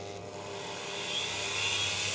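Dremel rotary tool starting up and spinning a brushless DC motor coupled to its chuck, driving the motor as a generator. The whine grows louder over the first second and a half as the tool comes up to speed, then holds steady.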